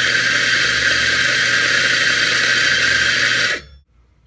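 Electric espresso grinder running, grinding coffee beans into a portafilter: a loud, steady grinding noise over a low motor hum, which cuts off suddenly shortly before the end.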